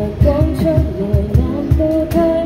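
Live acoustic pop song: a woman singing over acoustic guitar, with a cajon keeping a steady beat of low thumps.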